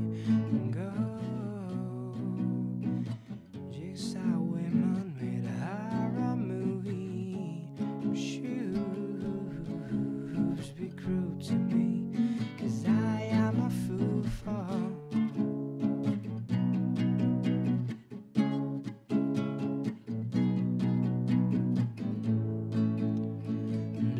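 Acoustic guitar playing the song's chords in a stretch without sung lyrics.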